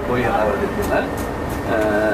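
Steady low rumble of a moving coach's engine and road noise heard from inside the cabin, with people talking over it.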